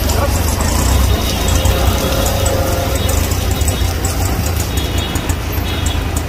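Heavy rain pouring on a city street, a dense steady hiss with a low rumble of passing traffic under it.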